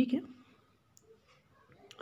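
A short spoken word, then quiet room tone broken by a single sharp click near the end.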